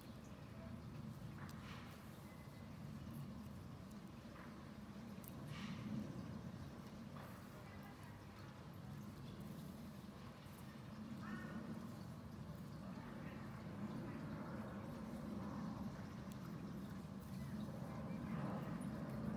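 A low steady background hum with soft, faint rustles of yarn and thread as a small crocheted piece is handled and hand-sewn with needle and thread.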